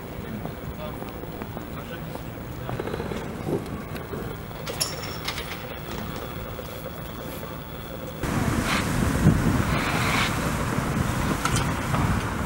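Outdoor street ambience with faint voices in the background. About eight seconds in, it cuts to louder wind noise buffeting the microphone.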